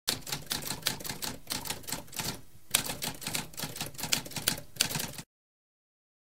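Typewriter keys being struck in a rapid, uneven run, with a short pause about halfway and one louder strike just after it; the typing stops suddenly about five seconds in.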